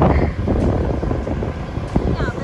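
Wind buffeting the microphone and road noise from a moving scooter.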